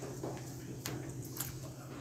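Quiet room tone with a steady low hum and two faint clicks, a little under a second in and again about half a second later.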